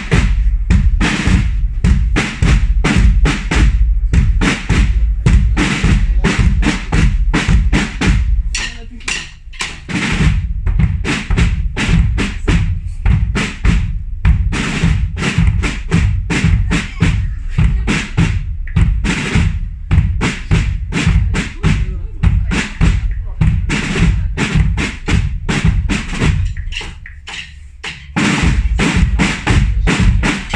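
A drum band of side drums and bass drums playing a fast, driving march rhythm with rolls over a heavy bass-drum beat. The playing eases off briefly twice, about nine seconds in and again near the end, before coming back in full.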